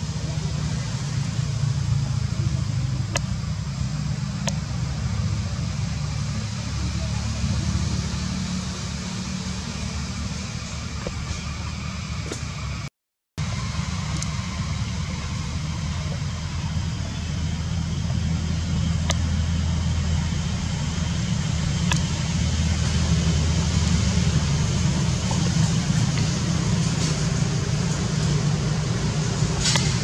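A continuous low rumble with a steady hiss above it, cut by a brief moment of total silence about thirteen seconds in.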